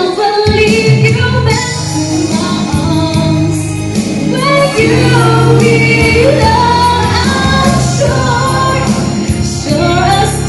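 A woman singing into a microphone over instrumental accompaniment, with long held notes.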